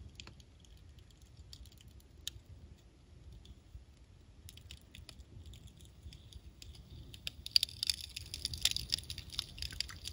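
Small fire crackling as it burns a model train coal car, with a faint low rumble underneath. The crackles are sparse at first and grow thicker and louder over the last few seconds as the flames spread.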